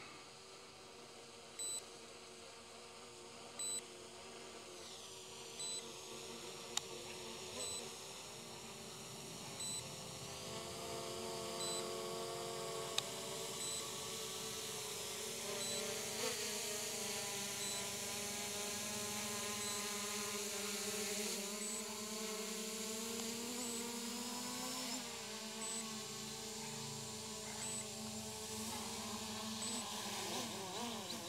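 RUKO F11GIM2 quadcopter drone's propellers buzzing, their pitch shifting up and down as it is flown down to land, getting louder as it comes close. A short electronic beep sounds about every two seconds.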